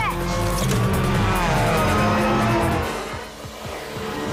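Film action-chase soundtrack: orchestral music mixed with motorcycle and traffic sound effects, with a long falling pitch near the middle like a vehicle passing.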